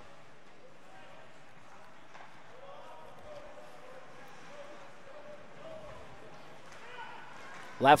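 Faint ice-rink ambience during play: a steady low hiss with distant, indistinct voices from the stands.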